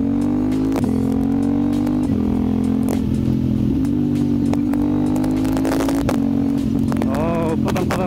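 KTM 890 Duke's parallel-twin engine running under way at a steady, slightly rising pitch, its note broken briefly several times, about a second apart. Wind buffets the helmet camera throughout.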